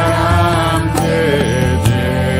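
Devotional Hindu mantra chant music. A sung line bends in pitch over sustained drone tones, with occasional percussion strokes.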